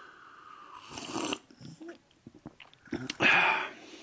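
A man slurping a sip of hot tea, the drawn-in air growing louder just over a second in, with small mouth and cup clicks after it. A short, louder breathy burst of air follows about three seconds in.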